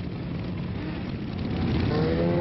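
The engines of a large group of motorcycles running as they ride past together, a steady low drone.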